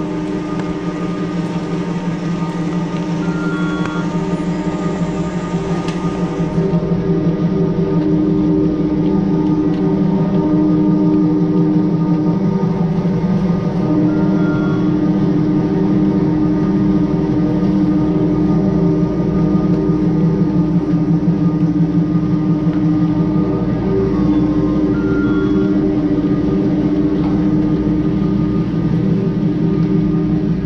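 Steady machine drone with a low hum and a few fixed pitches at a chairlift's bottom terminal, from the lift's running machinery and a small tracked snowblower working beside the loading area. It grows louder about seven seconds in.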